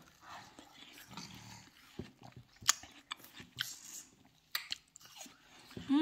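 Small children chewing and eating juicy watermelon pieces: faint, irregular wet mouth clicks and smacks.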